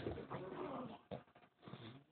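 Two Shih Tzus growling as they tug at a plush toy between their teeth, in short rough bursts.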